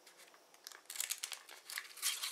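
Pleated paper cupcake liners crinkling and rustling as one is pulled off a nested stack by hand, a run of light crackles starting about half a second in.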